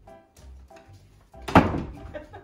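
Background music with short, evenly repeated notes, and about one and a half seconds in a single loud thunk of a room door being shut.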